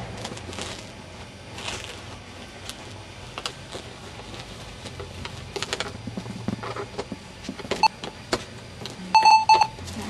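Scattered light clicks and knocks, then near the end a quick run of short electronic beeps.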